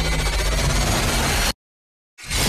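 Trailer soundtrack: a dense mix of electronic score and sound effects over a deep low rumble, cutting off abruptly to dead silence about one and a half seconds in.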